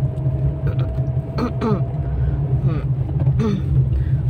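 Steady low rumble of a car's engine and tyres, heard from inside the cabin while driving. A faint steady high tone fades out about two and a half seconds in.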